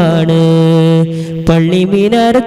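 A young male singer holds one long, steady note of a Malayalam Islamic madh song (devotional praise of the Prophet), then moves on into the next ornamented phrase about one and a half seconds in. A single sharp knock comes as the held note ends.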